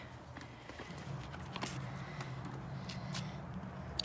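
A rabbit being lowered into a plastic bucket, its feet and claws scrabbling and knocking against the plastic in a few short scrapes and clicks, over a steady low hum.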